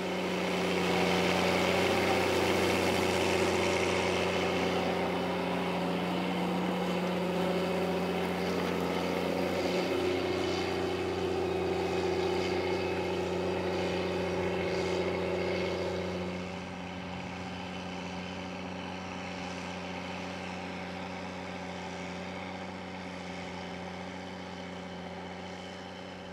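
Challenger MT765B tracked tractor's diesel engine running steadily under load while pulling an eight-furrow plough. The sound drops to a quieter, more distant level about two-thirds of the way through.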